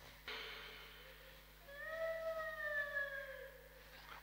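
A faint, drawn-out cry of about two seconds starting near the middle, rising briefly and then slowly falling in pitch.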